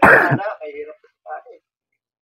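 A man clears his throat loudly and harshly at the start, followed by a few short, quieter voice sounds.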